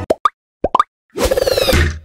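Logo-sting sound effects: four quick rising bloops in two pairs, then about a second in a louder swelling whoosh with a falling sweep in it.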